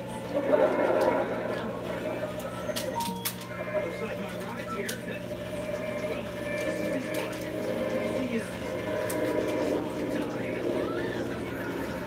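Indistinct background voices, with no clear words, over a steady low hum.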